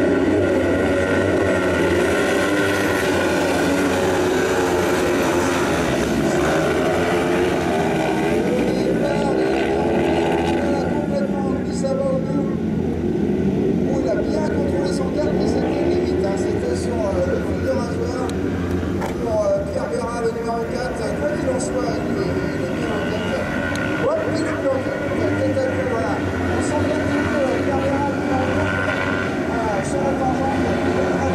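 A pack of 500 cc kart cross buggies racing on a dirt track. Several engines run at once, revving up and down as the cars accelerate and brake through the corners.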